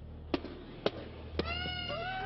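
Three sharp cracks about half a second apart, then a long, high whooping shout from a person in a crowd begins about one and a half seconds in, held and rising slightly, with other voices joining near the end.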